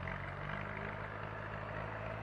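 An engine running steadily, giving a low, even hum with some rumble.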